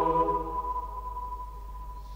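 Choir's held chord in a Greek Orthodox liturgical setting dying away at the end of a phrase. It fades over about a second and a half to a faint lingering tail.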